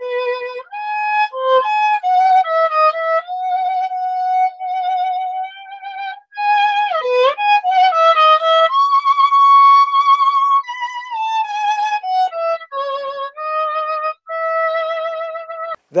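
Solo violin playing a slow melody over a video-call connection: one line of held notes, with slides between notes and one long held high note about halfway through.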